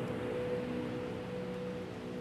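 Slow relaxing piano music: a chord held and ringing out, with no new notes struck, over a steady hiss of ocean waves.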